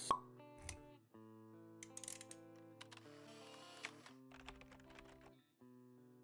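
Quiet electronic intro jingle for an animated logo: a sharp pop at the start, then soft held notes with small clicks and a brief swish in the middle.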